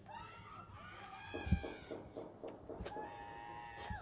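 High, drawn-out cries, the last held steady near the end, with a single thump about a second and a half in.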